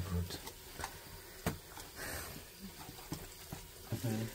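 Faint, soft sounds of hands mixing spice-coated raw chicken pieces in a steel bowl, with a sharp click about a second and a half in.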